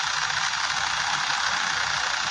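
Steady, even hiss with no other event standing out.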